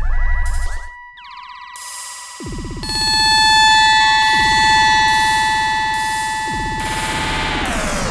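Korg Electribe EM-1 playing a pattern of sustained, stacked synth tones, its global pitch set by a replaced clock crystal. The sound thins out about a second in and builds back up, and near the end all the notes glide down in pitch together as the clock is slowed.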